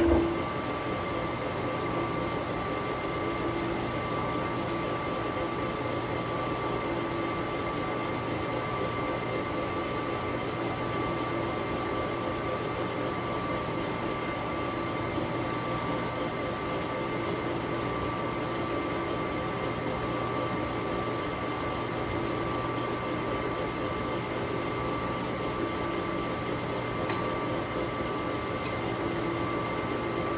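Metal lathe starting up with a sudden jolt, then its spindle and gear train running steadily with a faint whine, turning a large four-jaw chuck.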